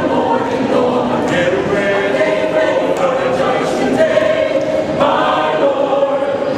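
A mixed choir of men and women singing together in held, sustained notes, with a fresh phrase entering about five seconds in.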